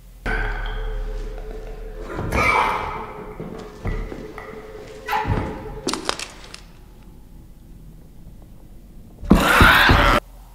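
Soundtrack of a horror TV episode playing back: an infected creature's snarling and several thuds during a struggle, with the loudest burst of noise near the end.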